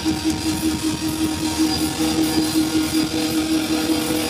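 Live heavy rock band: a sustained, distorted electric guitar note is held steadily over a dense, rapid low rumble from the band.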